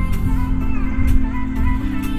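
An electronic music track playing through the 12-speaker Harman Kardon car audio system, heard inside the cabin, with held synth notes, gliding lines and heavy bass.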